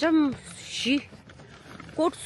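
A woman's voice: a short exclamation falling in pitch at the start, then a breathy hiss and another brief syllable.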